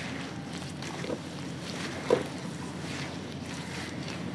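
Hands squeezing and mixing wet, gritty cement in water in a plastic tub: wet squelching and sloshing with small gritty crackles, and one sharper, louder squelch about two seconds in.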